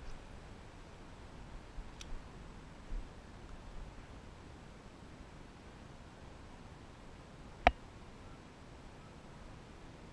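Quiet outdoor background hiss, with a faint click about two seconds in and one sharp, short click about three quarters of the way through, the loudest sound here.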